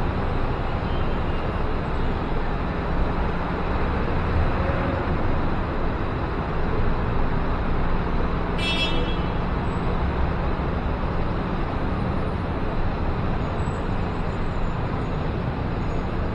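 Steady road traffic noise from the city around a high-rise balcony, with a brief high-pitched toot about nine seconds in.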